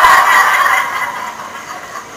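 An audience, mostly women, laughing together at a joke's punchline. The laughter is loudest at the start and dies away over about a second and a half.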